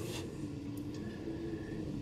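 Quiet pause: low room tone with a faint steady hum.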